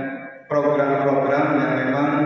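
A man's voice amplified through a microphone and loudspeakers in a reverberant hall, in drawn-out, steady-pitched sounds, with a short break about half a second in.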